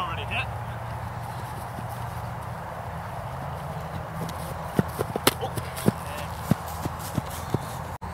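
A steady low rumble, and from about halfway a string of about ten irregular sharp taps and clicks, some louder than others.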